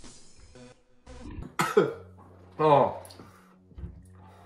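A man coughing and spluttering after downing shots of tequila: two harsh bursts about a second apart, over background music.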